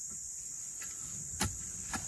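Crickets chirring steadily in a high, even drone, with two short sharp clicks of handling, one a little past halfway and one near the end.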